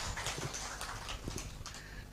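Scattered hand claps from a seated audience, fading away over the two seconds.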